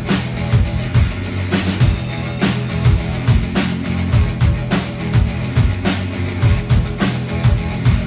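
A live rock band playing through amplifiers: electric guitars over a drum kit keeping a steady beat.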